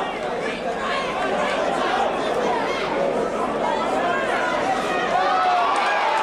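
Boxing crowd shouting and calling out, many voices overlapping at once, getting a little louder about five seconds in.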